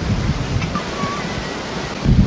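Sea surf washing steadily, mixed with wind, as an even rushing noise. A faint short high tone sounds about a second in.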